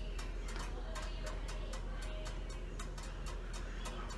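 Thick chili being stirred in a pot with a spatula as it bubbles: a run of irregular small wet pops and clicks. Faint music plays in the background.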